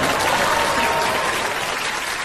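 Applause: a crowd clapping steadily, easing off slightly toward the end.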